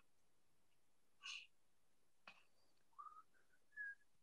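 Near silence, broken by a faint brief rustle, a single click, and near the end two short whistle-like tones, the second higher and held a moment.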